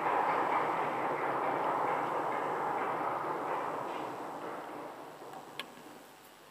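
Audience applause at the end of a lecture: a dense patter of many hands that starts loud and fades away over about five seconds.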